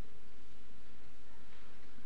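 Room tone: a steady low hum with a faint hiss and no distinct sounds.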